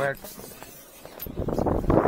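Wind buffeting the microphone in gusts, building over the second half and loudest near the end.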